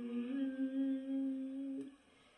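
A woman humming one long held note with closed lips, which stops abruptly near the end.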